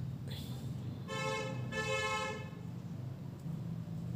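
A vehicle horn honking twice, two short toots each about half a second long, about a second in and again just after, with a steady low hum underneath.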